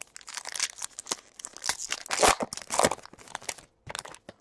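A foil trading-card pack wrapper being torn open and crinkled by hand: a run of irregular rips and crackles, loudest a little past the middle.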